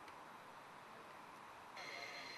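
Faint, steady background ambience close to near silence. Near the end it cuts to a slightly louder ambience carrying a steady high-pitched whine.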